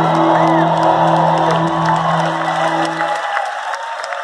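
A live rock band's final chord held and ringing out, dying away about three seconds in, while the crowd cheers, whoops and claps.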